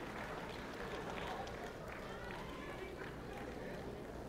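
Indistinct voices of spectators talking in the stands, a low crowd murmur with no single clear speaker.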